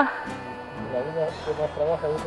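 Background music with steady held notes, and quiet voices talking under it about halfway through.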